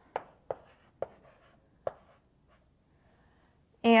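Chalk writing on a blackboard: four sharp taps and short strokes in the first two seconds.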